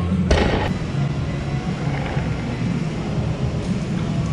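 A loaded barbell with rubber bumper plates set down on a rubber gym floor: one heavy thud about a third of a second in, over a steady low rumble.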